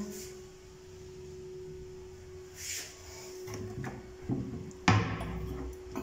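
Bathroom vanity cabinet door being handled: a few light knocks, then one sharp click about five seconds in, over a steady faint hum.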